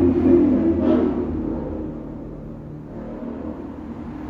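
A motorcycle engine going by, loud at first and fading away over the first two seconds or so into a low rumble.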